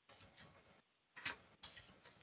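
Near silence with a few faint, brief clicks, the clearest about a second and a quarter in.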